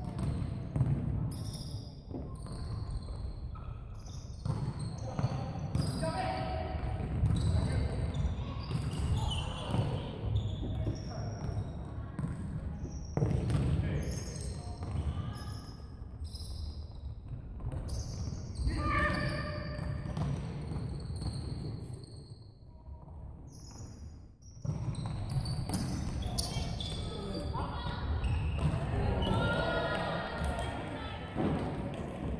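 Futsal ball being kicked and bouncing on a hardwood sports-hall floor, with players' shouts echoing in the large hall. There is a brief lull a little after two-thirds of the way through.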